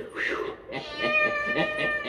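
A cat meowing on a vinyl record playback: a short falling meow, then about three-quarters of a second in a long drawn-out meow held at one steady pitch.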